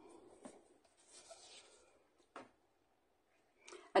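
Faint rustles of card stock being handled and slid on a craft mat, with two light taps, one about half a second in and one just past two seconds.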